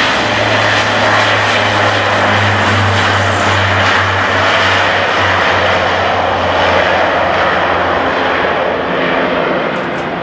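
Bombardier Dash 8 Q400's twin Pratt & Whitney PW150A turboprops and six-bladed propellers at takeoff power: a loud, steady propeller drone with a low hum as the airliner rolls down the runway, lifts off and climbs away. The low hum fades about halfway through, and the sound eases slightly near the end.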